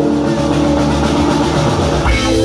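Live jam band playing an instrumental passage: a dense, sustained wash of held guitar and keyboard notes over bass.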